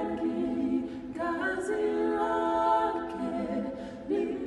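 A small group of voices singing a cappella in close harmony, holding long sustained chords; one phrase fades and a new one begins about a second in.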